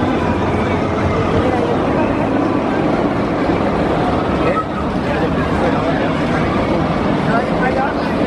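Arrow mine train roller coaster rumbling along its steel track, with a steady roar and people's voices mixed in.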